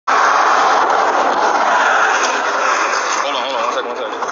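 Steady rushing noise of highway traffic beside a roadside stop, picked up by a police body camera's microphone, easing slightly toward the end, with a brief voice about three seconds in.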